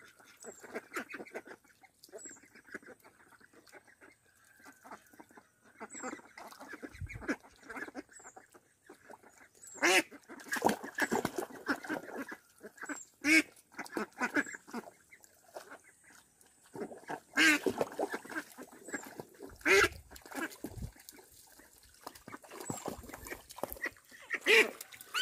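Small flock of ducks, Itik Pinas among them, quacking and chattering on and off as they swim and dabble. The calling grows louder in bouts about ten seconds in and again from about seventeen to twenty seconds.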